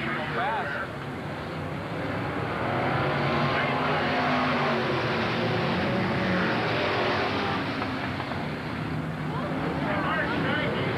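Dirt-track stock cars' engines running on the track together: a steady drone whose pitch slowly rises and falls as the cars circle.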